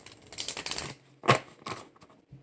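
A deck of tarot cards being riffle-shuffled, a quick fluttering rattle of cards for about half a second. It is followed by two knocks, the first loud and the second softer, as the deck is tapped square on the table.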